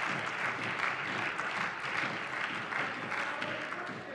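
Applause from members in a parliament's plenary chamber, a dense, even clapping that begins to fade near the end.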